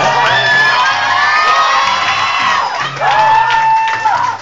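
Acoustic guitars strumming live, with high, drawn-out whoops and cheers from an audience over them, several voices at once and then one long held cry near the end.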